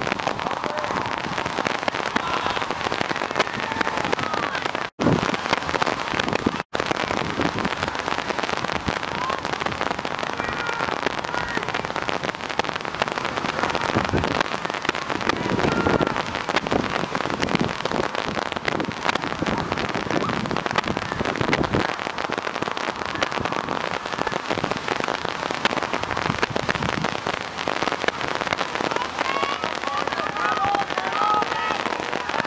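Wind buffeting the camera microphone, a steady rough crackle, with faint shouts from players and spectators in the distance. The sound cuts out briefly twice, about five and seven seconds in.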